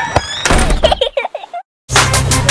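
A sharp knock-like thump, then a short run of wavering, voice-like sounds, and the audio drops out to silence for a moment near the end.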